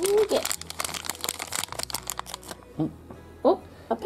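A foil blind-bag packet crinkling and tearing as it is pulled open by hand, the crackling dense for the first two and a half seconds and then stopping. A few brief vocal sounds break in.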